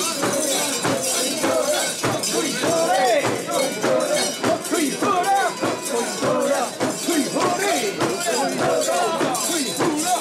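Crowd of mikoshi bearers shouting and chanting together as they carry a portable Shinto shrine, with the shrine's metal fittings jingling and clinking over the voices.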